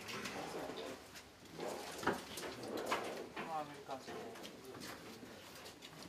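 Faint, low voices murmuring in short snatches, with a sharp click about two seconds in and light rustling and knocks of gear.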